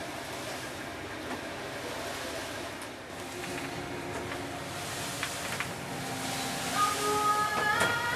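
Steady engine rumble and sea noise of a boat under way in rough water, heard from inside the cabin. Near the end a tune with clear held notes starts playing over it.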